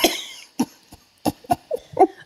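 A woman's laughter fading out, followed by about six short, breathy bursts spaced through the rest of the moment.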